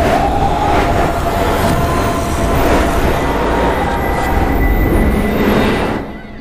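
Loud, steady rushing rumble with a faint thin tone running through it, fading away at the end.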